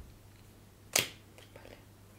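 A single sharp click about a second in, over a faint steady low hum.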